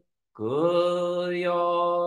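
A man chanting a Buddhist sutra in Japanese on one held monotone pitch. After a brief pause for breath at the start, the voice slides up into the note and sustains it.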